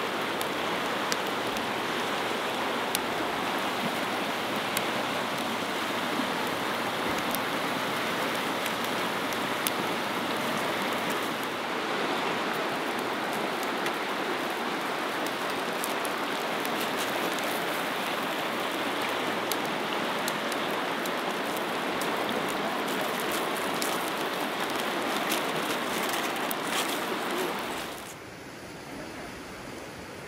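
Steady rushing of a fast-flowing river, an even wash of water noise with faint scattered ticks. It drops away suddenly about two seconds before the end, leaving a quieter hiss.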